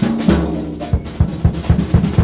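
Jazz drum kit played prominently in a piano-trio performance: fast bass drum and snare strokes over ringing cymbals, several strokes a second.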